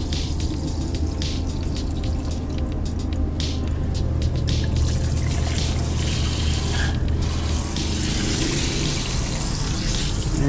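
Handheld shower spraying water steadily down into a shower pan, with the camper's water pump humming low underneath. The plumbing lines are being flushed of pink RV antifreeze while de-winterizing.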